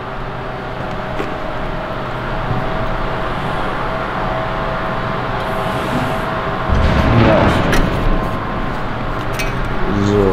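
Electric sheet-metal folding machine running with a steady motor hum. It gets louder for about a second around seven seconds in, with a short rise and fall in pitch.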